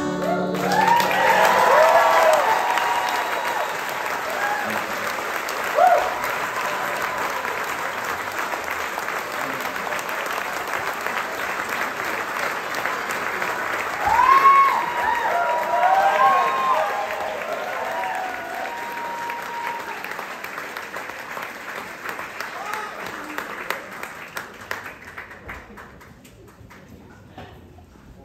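Audience applauding and cheering after a song ends, with shouts and whoops rising above the clapping near the start and again about fourteen seconds in. The applause dies down toward the end.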